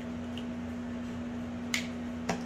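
A single sharp plastic click near the end as the cap of a dry-erase marker is snapped on, over a steady low background hum.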